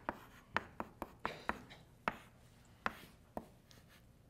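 Chalk on a blackboard as a formula is written: a string of sharp, irregularly spaced taps and short scrapes as each stroke hits the board.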